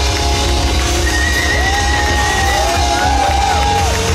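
Pop-punk band playing live and loud: drums and electric guitars, with long wavering, gliding high notes held over them from about a second in to near the end.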